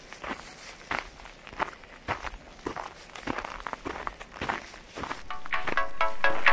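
Footsteps on a snowy forest path, about one and a half steps a second. Music fades in near the end.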